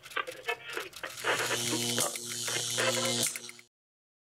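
Outro sound effects and music: short scattered sounds, then a held low electronic note under a hiss, broken once. It cuts off suddenly near the end.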